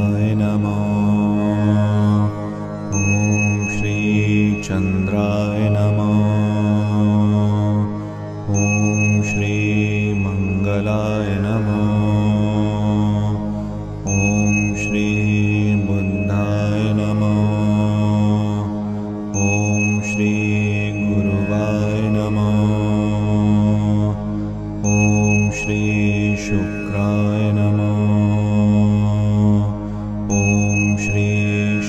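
A Hindu mantra chanted to a slow, repeating melody over a sustained drone. A high, bell-like chime rings out about every five and a half seconds, marking each repetition.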